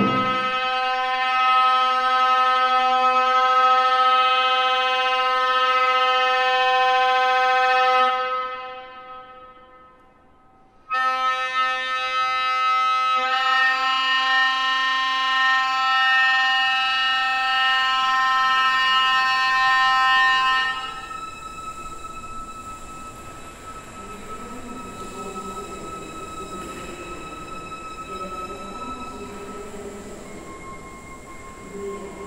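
Clarinet playing long, steady held notes. The first note fades away after about eight seconds, and a new held note comes in loudly about eleven seconds in, growing brighter. From about twenty-one seconds the sound drops to a quieter stretch with a thin, steady high tone.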